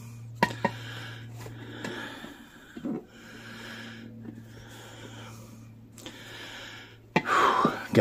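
A man breathing heavily in a slow series of wheezy breaths as he strains to lever a tire bead over its rim, with a few light clicks near the start and about three seconds in.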